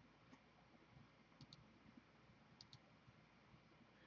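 Near silence with a few faint clicks at a computer, two of them coming as quick pairs.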